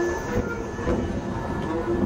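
Free-improvised experimental music: bowed cello and saxophone playing short repeated notes over a dense low rumble, with a steady high tone held throughout.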